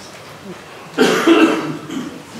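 A person coughing once, a sudden burst about a second in that lasts under a second.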